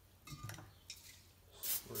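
A few faint, light clinks of small steel shotgun parts being picked up and handled on a workbench.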